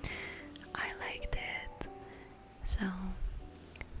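A woman's soft whispered voice-over, in short whispered fragments with a brief voiced 'um' about three seconds in, over faint background music.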